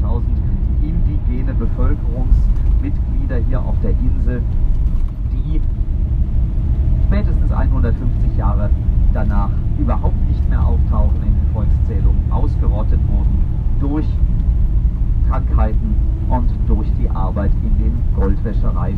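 Inside a moving bus: a steady low engine and road rumble, with a person's voice talking over it.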